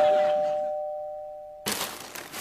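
Two-tone ding-dong doorbell chime, a higher note then a lower one ringing on and fading, cut off at about one and a half seconds; then brief rustling.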